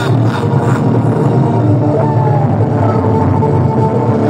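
Loud electronic music with long held notes over a steady low bass.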